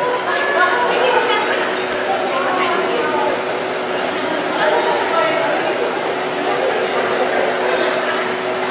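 Indistinct chatter of several people in a large room, with a steady hum under it.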